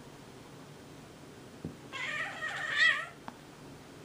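A domestic cat's drawn-out cry, about a second long with a wavering pitch, given mid-scuffle while two cats wrestle. A light knock comes just before and just after it.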